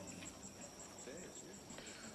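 Faint crickets chirping in a high, rapid, even pulse over quiet background.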